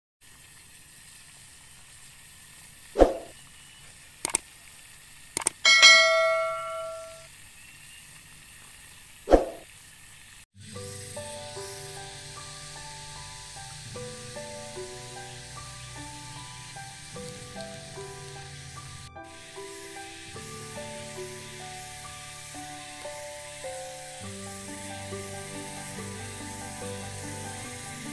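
Two short loud hits about six seconds apart, with a few clicks and a ringing bell-like chime between them. From about ten seconds in, gentle instrumental background music made of many short notes plays over a steady hiss.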